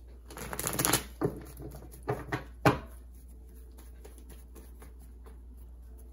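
A deck of tarot cards being shuffled by hand: a rustling shuffle in the first second, then a few sharp card snaps, the loudest just before three seconds in.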